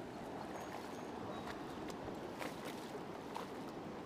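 Steady rush of river current flowing over shallows, with a few faint clicks.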